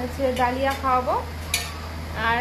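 A metal utensil stirring and scraping in a stainless steel bowl, with one sharp clink about one and a half seconds in.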